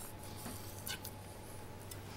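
Faint knife work on a chopping board while trimming a salmon fillet: a few light, scattered taps and scrapes of the blade, over a low steady hum.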